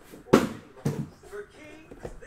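Two dull thumps about half a second apart, the first the louder, as sealed cardboard hobby boxes of trading cards are handled and set down on a table.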